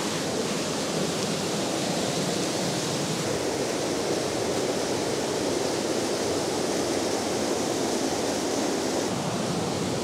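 High river water pouring over a concrete weir: a steady, full rush of white water.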